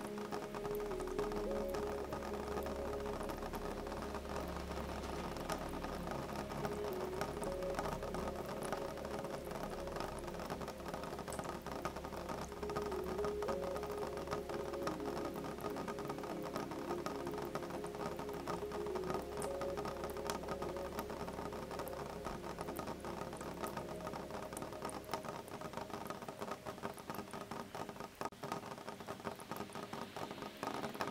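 Gentle rain pattering steadily on a window, a dense run of light drops, under soft calm music with long held notes. A low rumble underneath drops away near the end.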